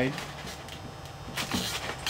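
Hands working a Depron foam tube and pulling a strip of tape taut across a glued joint: low rubbing handling noise, with a few short scratchy clicks about a second and a half in.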